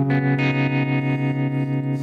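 Harmony Jupiter Thinline hollow-body electric guitar with gold foil pickups, playing a sustained chord through an MXR tremolo pedal set fast, so the level pulses quickly, with reverb on it.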